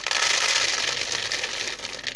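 Dry red beans pouring in a steady stream from a paper packet into a plastic bowl, a loud continuous rattle of beans hitting the bowl and each other.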